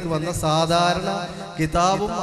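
A man's voice speaking into a handheld microphone over a public-address system, some syllables drawn out long, with a steady low hum beneath.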